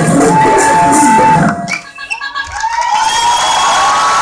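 Loud dance music with a beat cuts off suddenly about a second and a half in. After a brief lull, an audience starts cheering and whooping.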